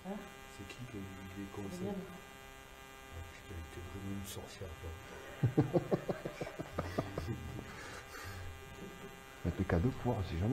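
Low, indistinct voices talking, over a steady electrical buzz.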